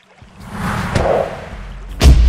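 A swoosh sound effect that swells up and fades over about a second, over a low music bed.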